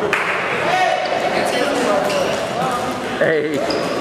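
Many voices chattering at once, echoing in a large gym hall, with a single thump right at the start.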